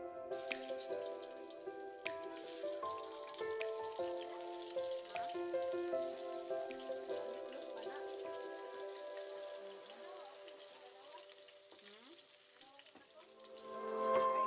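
Onion and garlic frying in oil in a wok: a steady sizzle. Background music of short melodic notes plays over it.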